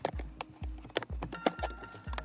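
Scattered light clicks and knocks of plastic car interior trim being handled and pressed into place, over background music with a steady low beat.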